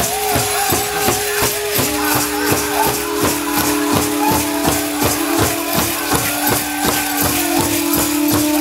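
Powwow grand entry song: a big drum struck in a steady beat of about three strokes a second, with voices holding long sung notes over it. The metal cones of jingle dresses and dancers' bells shake in a bright rattle above the beat.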